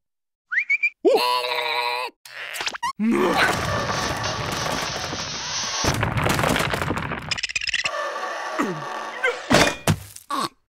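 Cartoon slapstick sound effects over music: a squealing cartoon voice, then a long noisy scuffle, and sharp thunks and whacks near the end as the characters crash to the ground.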